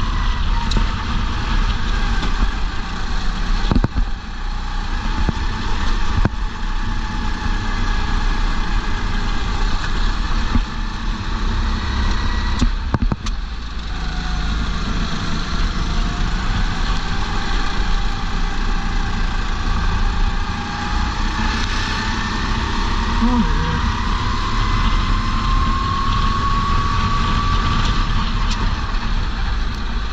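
Racing kart engine running hard, heard from a chin-mounted helmet camera with wind noise. The engine note drops under braking a few times and then climbs steadily over the second half as the kart accelerates out of a corner.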